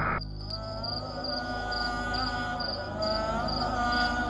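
Crickets chirping, a short high chirp about twice a second, over a soft sustained musical drone of held notes.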